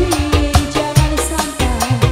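Live dangdut band playing: a woman sings a held, bending melody over kendang hand drums, electric guitar and keyboard, with a steady drum beat.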